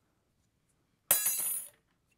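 A thin metal cutting die clinks sharply onto a glass craft mat about a second in, rattling for about half a second.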